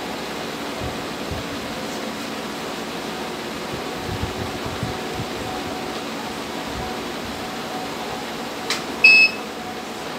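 Universal washing machine control board giving a single short electronic beep as it powers up, just after a click near the end, over a steady background hum.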